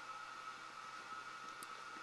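Quiet room tone: faint hiss with a thin, steady high-pitched tone.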